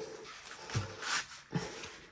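A few brief rustles and crinkles of the clear plastic film on a diamond painting canvas as hands smooth it flat.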